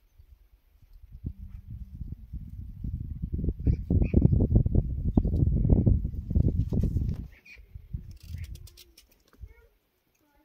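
Low, rough rumbling buffeting that builds in the first seconds, is loudest in the middle and dies away about three quarters of the way through, typical of wind on the microphone. A few short bird chirps sound over it.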